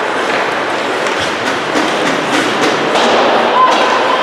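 Ice hockey play in an echoing rink: skates scraping the ice and a few sharp stick clacks, over indistinct voices.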